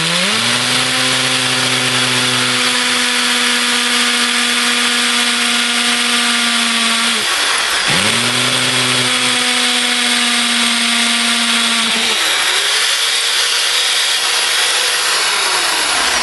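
Hammer drill with a 3/16-inch masonry bit boring steadily into brick. The motor's pitch sags briefly and picks up again twice, about halfway and about three-quarters of the way through.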